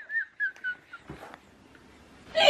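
A woman's high-pitched, wheezing laughter: a string of short, squeaky whistle-like notes that die away about a second in.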